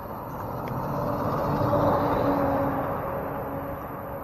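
A motor vehicle going by, its engine hum swelling to a peak about halfway through and then fading away.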